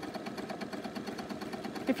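Bernina sewing machine running steadily through a triple stitch, the needle sewing back and forth with a rapid, even ticking.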